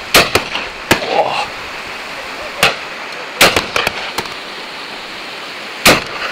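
Shotgun shots on a driven game shoot. Three loud reports come just after the start, about three and a half seconds in, and near the end, with fainter, shorter cracks between them.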